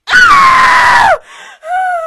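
A loud, high-pitched human scream held for about a second, its pitch dropping as it ends, then a shorter, quieter cry that falls in pitch.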